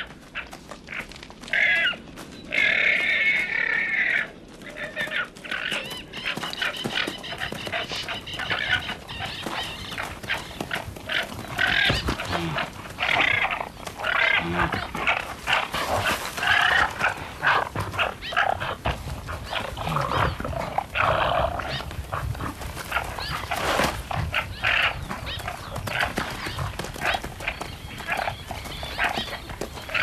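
Male guanacos fighting and chasing: repeated shrill calls, with many short knocks and scuffles of hooves and bodies throughout.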